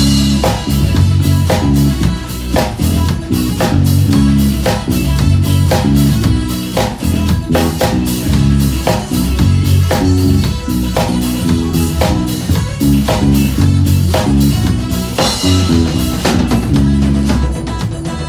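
Electric bass and a drum kit playing a pop song together with a steady beat, the bass line carrying underneath the kick, snare and cymbals.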